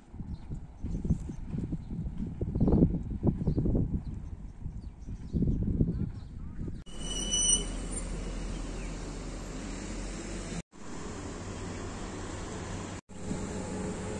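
Wind buffeting the phone's microphone in uneven low rumbling gusts. After a cut about halfway through comes a steady outdoor street hum with distant traffic, broken twice by brief edit dropouts.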